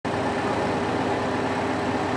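Liebherr LTM 1220-5.2 mobile crane's diesel engine idling, a steady, unchanging hum.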